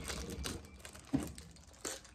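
Perfume box being unwrapped and opened by hand: crinkling packaging and small scattered clicks, with a sharper click near the end.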